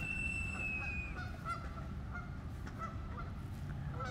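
Canada geese honking at a distance: one long, high, thin call lasting about a second at the start, then several short, faint honks, over a steady background hiss.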